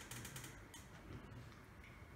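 Near silence: faint room tone in a hall during a pause in a talk.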